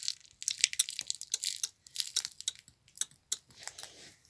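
Irregular light clicks and taps, several a second, from a phone being handled.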